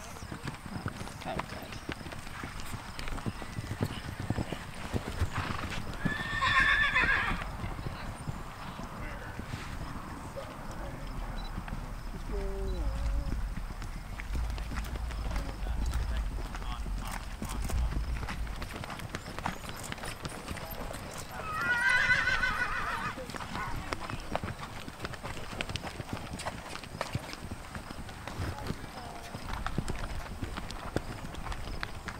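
Horses cantering on a sand arena, their hoofbeats soft and uneven. A horse whinnies twice, each call lasting a second or so, about a fifth of the way in and again about three quarters through. A low rumble comes in the middle.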